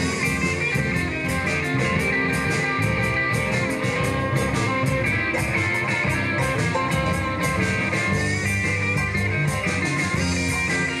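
Live band playing an instrumental stretch of a blues number with no singing: electric guitars, bass, keyboard and a drum kit, the cymbals keeping an even beat.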